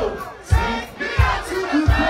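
Live go-go band music: a drum beat thumping about every two-thirds of a second, with a crowd of voices chanting over it.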